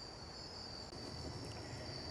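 Crickets chirping in a faint, steady, high-pitched chorus.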